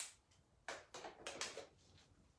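Faint handling sounds from a Christmas ornament and craft pieces being picked up and turned: one sharp click, then a quick run of short scrapes and rustles about a second in.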